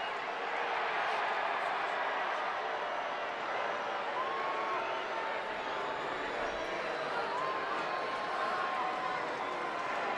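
Ballpark crowd noise: a steady murmur of many voices, with a few faint held tones rising out of it now and then.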